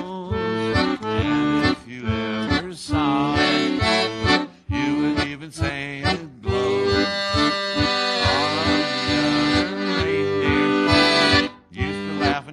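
Piano accordion playing a tune, the melody in held chords over a steady bass beat.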